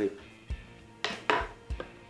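A few sharp clicks and knocks from handling things on a workbench. A felt-tip marker is capped and set down, and two folding pocket knives are picked up off the table. The loudest knocks come about a second in.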